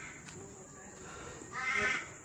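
Faint background noise, then one short, harsh bird call about one and a half seconds in.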